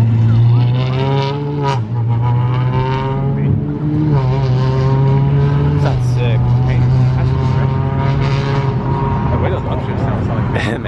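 Car engines revving as cars drive past: a steady engine drone underneath, with several pulls that rise in pitch, about a second in, around four seconds and around six seconds.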